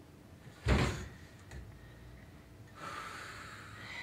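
A single dull thump just under a second in, like a hand or body striking the table or stage, then a breathy rushing sound near the end.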